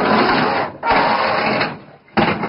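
Two harsh scraping noises, each under a second with a short gap between them, from work at the back of a truck.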